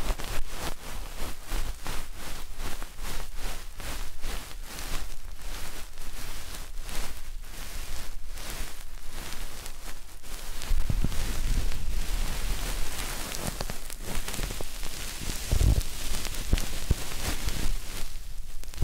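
The fluffy cotton puff (bonten) of an ear pick brushing over the ear of a binaural 3Dio microphone, with scratchy rustling close up. It comes in quick strokes a few times a second, then from about eleven seconds turns to a denser rubbing with low thumps.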